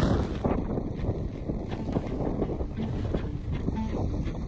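Wind buffeting the microphone aboard a sailing yacht under way in a fresh breeze: a steady, uneven low rush.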